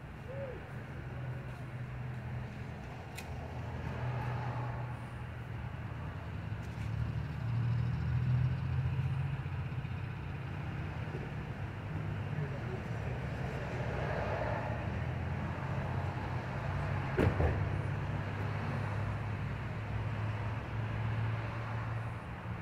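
Steady low hum of an idling car engine, with faint, indistinct voices now and then and a single brief click near the end.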